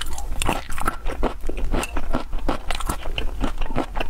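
Close-miked chewing of a raw garlic clove: a rapid run of crisp, crunchy bites, a few a second.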